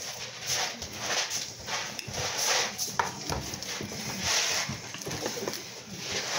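A phone being handled close to its microphone: irregular soft rustles and a few clicks.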